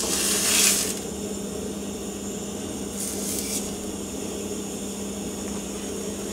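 Sesame-crusted tuna steak sizzling in a cast-iron skillet over a butane camp-stove burner, with a louder burst of sizzle in the first second and a brief one about three seconds in. The sizzle is weak because the pan is not as hot as it should be for a sear.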